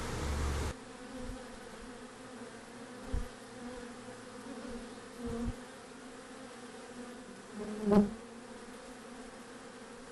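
Honeybees buzzing as they fly around a beehive, a faint steady hum with one louder buzz about eight seconds in as a bee passes close to the microphone. A brief hiss cuts off under a second in.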